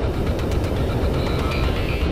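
Tesla Model 3 at speed on a paved mountain road: steady tyre and wind noise picked up by a camera mounted outside on the car's side. Faint steady tones come in during the second half.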